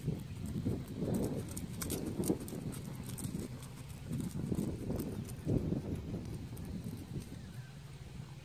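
A horse cantering on grass, its hoofbeats thudding in a repeating rhythm that grows fainter as the horse moves away toward the end.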